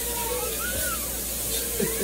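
Steak frying in a pan on a gas stove, a steady sizzling hiss, with a faint pitched sound in the background.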